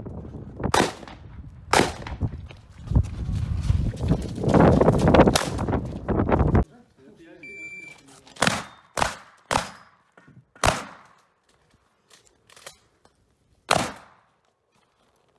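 Shotgun shots during a practical shooting stage: two shots in the first two seconds over heavy background noise, then, after a cut, a single short high beep from a shot timer, followed by a quick string of about six shotgun shots over roughly five seconds.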